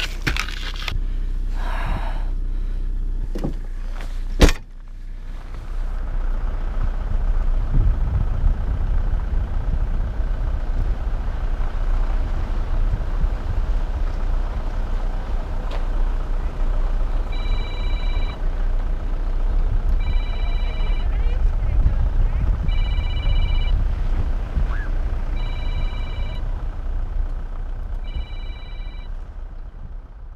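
Car driving, heard from inside the cabin: a steady low rumble of engine and road noise. In the second half an electronic warning chime beeps about every three seconds, five times. Before the car sound, a few seconds of handling noise end in one sharp knock.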